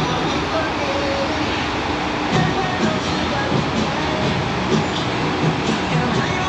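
Steady rushing roar of water pouring over a FlowRider surf simulator, with voices and music faintly beneath it.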